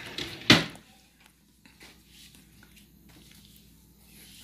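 A single sharp knock of something hard set down or shut, about half a second in, followed by faint small handling sounds.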